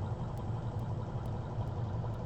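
A steady low hum over faint, even background noise.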